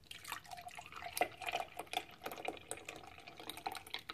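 Milk pouring from a carton into a NutriBullet blender cup, with irregular gurgling and splashing.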